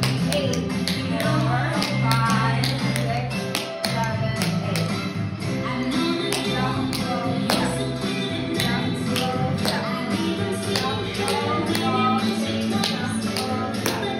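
Tap shoes striking the floor in quick, irregular clicks over a recorded pop song with singing.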